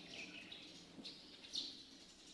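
Faint bird chirps, a few short high calls spaced about half a second apart, over quiet background.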